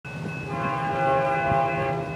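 A distant freight locomotive's horn sounding one long, steady chord that grows louder, over a low rumble.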